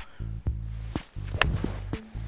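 Background music with a steady bass line. About one and a half seconds in, a single sharp crack of a golf club striking the ball off the grass.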